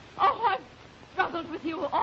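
A woman's melodramatic wailing cries, with no words: a short yelping burst near the start, then a longer, wavering cry about a second in.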